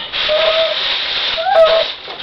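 A dog whining: a short held whine about half a second in, then a short cry that rises and falls about a second and a half in. A steady hiss runs underneath for most of the first part.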